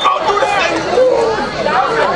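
Several people talking at once close by, a steady babble of overlapping voices with no single clear speaker: sideline and crowd chatter at a football game.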